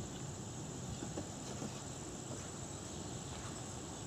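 Quiet outdoor background: a low steady rumble under a thin, constant high-pitched hum, with a few faint light clicks.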